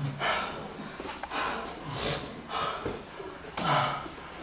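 A man breathing hard in loud, rough gasps, about five breaths at roughly one a second, winded from a sparring round.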